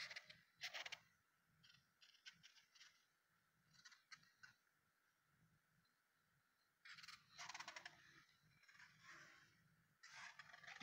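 Near silence with a few faint, brief handling rustles and clicks, and a slightly longer stretch of soft rustling about seven seconds in.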